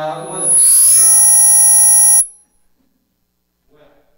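A loud electronic buzz with a high whine on top, swelling over the first half second, holding steady for about two seconds, then cutting off suddenly.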